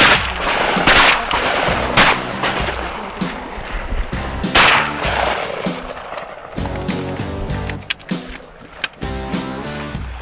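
Shotgun blasts at ducks: three about a second apart at the start and a fourth near the middle, each with a short echo. Background music with a steady beat runs underneath.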